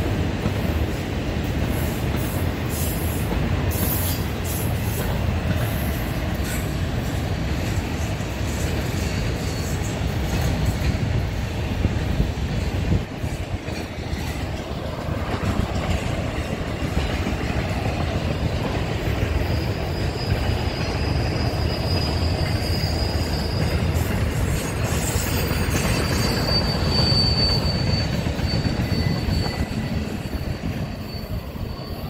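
Freight train of autorack cars rolling past close by, a steady rumble of steel wheels on rail. About two-thirds of the way through, a thin high wheel squeal comes in as the cars take a curve.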